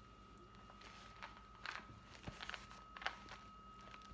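Faint handling noise: soft rustles and a few light clicks and taps as a fabric bag-organizer insert with a wallet in its side pocket is moved about, scattered through the few seconds.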